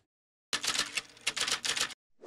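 Rapid, irregular typewriter-style key clatter, used as a sound effect under a text logo. It starts about half a second in and stops just before the end.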